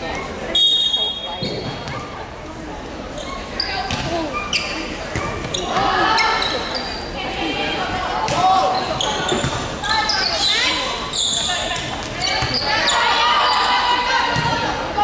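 Referee's whistle blows once, briefly, about half a second in. A volleyball rally follows in an echoing gym: repeated ball hits, with players' and spectators' shouts growing louder toward the end.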